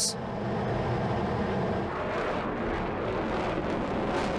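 Fighter jet engine noise from an F-22 Raptor in flight: a steady rush with a low drone beneath it.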